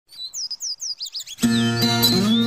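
Birdsong, a quick run of short falling chirps, then about one and a half seconds in the intro of a sertaneja raiz song starts, with birds still chirping over the music.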